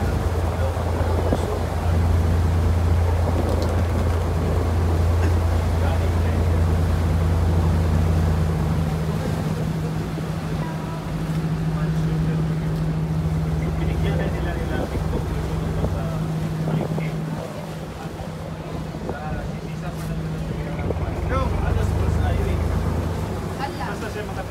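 The engine of a small wooden passenger boat running under way, a steady low drone. About eight seconds in the deep hum fades and a higher steady tone takes over; the deep hum comes back near the end. Water and wind noise lie underneath.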